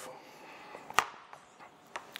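A single sharp click about a second in, from a screwdriver working a cover screw out of a Walbro diaphragm carburettor, with a fainter tick near the end; otherwise quiet.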